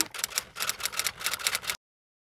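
Typewriter sound effect: a rapid run of key clacks that stops suddenly into dead silence about three-quarters of the way through.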